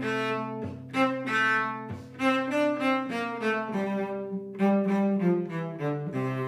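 Cello bowing a simple folk melody in F major, note by note, a tune made to mimic a cuckoo's call, with a steady low note sounding underneath.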